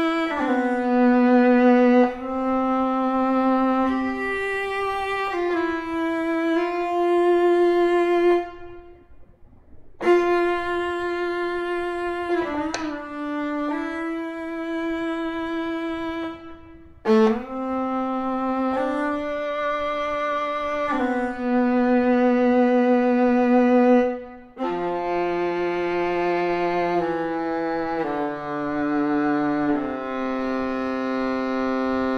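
Native Instruments Cremona Quartet Amati Viola, a sampled viola virtual instrument, playing a slow legato melody of sustained bowed notes in the viola's middle register. There is a pause about eight seconds in and a brief pitch slide near the middle.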